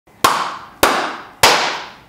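Three sharp hand claps, evenly spaced a little over half a second apart, each trailing off in room echo.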